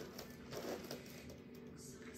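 Quiet room tone with a faint steady hum and a few soft movement sounds, a little louder about half a second to a second in.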